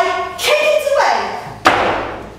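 A woman's voice makes drawn-out, sliding vocal sounds, then a single sharp thump comes near the end as her heeled shoe lands hard on a wooden floor.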